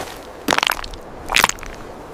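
Loose, broken rocks crunching under a bare foot, twice, about a second apart.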